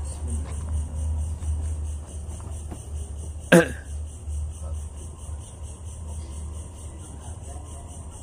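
Crickets chirping steadily at night over a low steady hum, with one sharp knock about three and a half seconds in.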